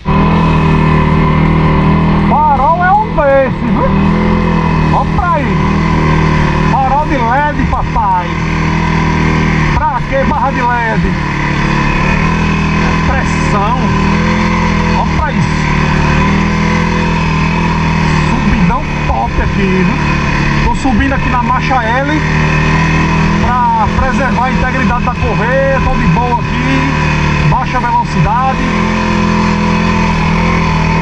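A quad bike's engine runs steadily as it drives along a rough dirt trail, heard from the rider's seat.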